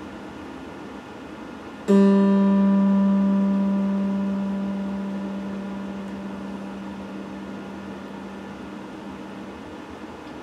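Electric guitar's open G string plucked once, about two seconds in, and left to ring, fading slowly over several seconds while the guitar is being tuned string by string.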